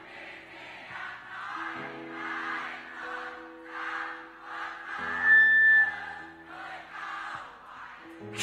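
Live rock band holding sustained chords while a large concert crowd sings along in waves. About five seconds in, a louder held note comes in with a thin high whistle-like tone over it.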